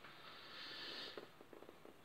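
A faint breath lasting under a second between spoken phrases, followed by a few faint clicks.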